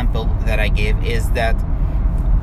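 A man's voice speaking over the steady low rumble of a car, heard from inside the cabin.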